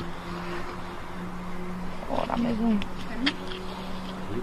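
A steady low hum runs throughout, with a man's muffled, indistinct voice about halfway through and a couple of light clicks shortly after.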